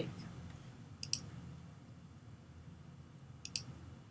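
Two computer mouse clicks, about a second in and again about two and a half seconds later, each a quick press-and-release pair. A faint low hum lies under them.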